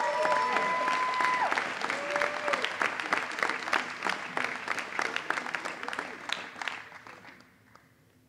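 Audience applause for a graduate crossing the stage, with a few drawn-out calls from the crowd in the first couple of seconds. The clapping thins and dies away near the end.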